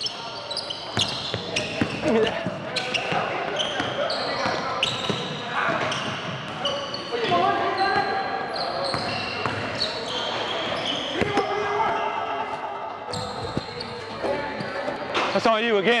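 Basketball bouncing on a hardwood gym court during play, with players' voices calling out and echoing in the large hall.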